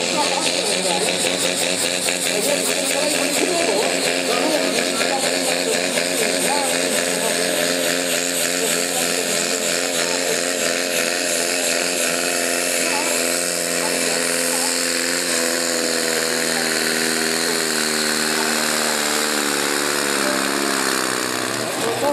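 Pulling tractor's engine at full throttle as it hauls the weight sled, its pitch wavering up and down. In the second half the pitch falls steadily as the engine bogs down under the sled's growing load.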